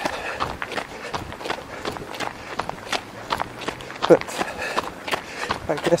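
A jogger's running footsteps: a steady rhythm of footfalls.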